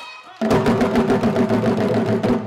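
A group of drummers playing African drums with sticks and hands, a dense driving rhythm that starts abruptly about half a second in.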